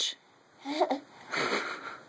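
A short pitched vocal sound, then a breathy, wheezy exhale lasting about half a second.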